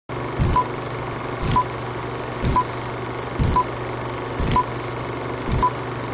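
Old-film countdown leader sound effect: a short high beep about once a second, each just after a low thump, over a steady film-projector crackle and hiss.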